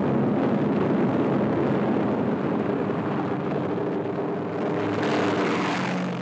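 Piston engines of a four-engine B-17 Flying Fortress bomber running steadily, getting louder and brighter for a moment about five seconds in.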